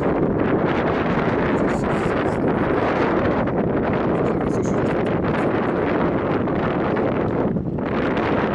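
Loud, steady wind buffeting the microphone: a continuous rushing noise that flutters unevenly.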